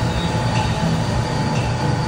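Steady low rumble and hiss of restaurant background noise, with a few faint clicks.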